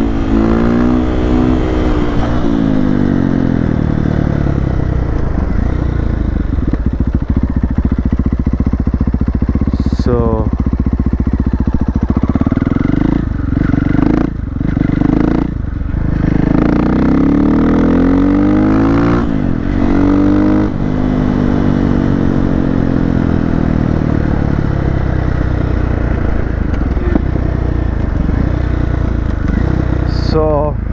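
Husqvarna FE 501's single-cylinder four-stroke engine through an FMF full exhaust system, ridden along. The revs rise and fall again and again as it accelerates and changes gear, with a few brief drops off the throttle around the middle.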